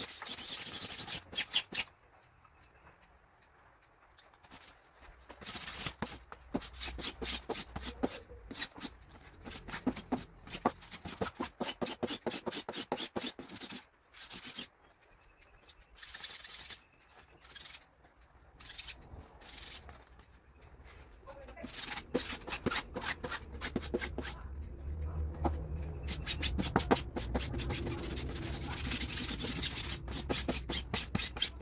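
Sticky lint roller rolled back and forth over a cloth garment, making a dense crackling in runs of strokes with a few short pauses.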